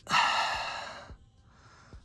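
A man's breathy sigh, about a second long, fading as it goes.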